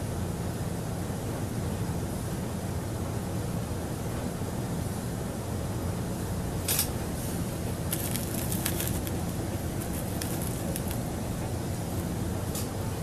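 A steady low hum, with a few faint, short clicks and crackles from about seven seconds in.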